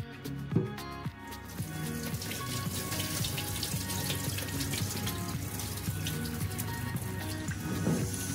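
Water splashing and running in a stainless-steel sink as rice is rinsed in a pot and the cloudy rinse water is poured off, starting about a second and a half in, over background music.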